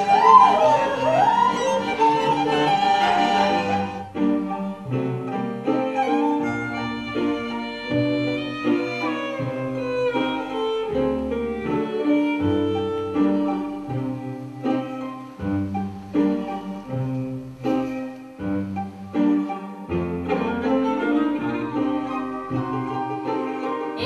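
Instrumental music played on strings, a violin line over lower cello-like notes. The first few seconds are louder with sliding pitches, then the music settles into a steady pattern of stepped notes.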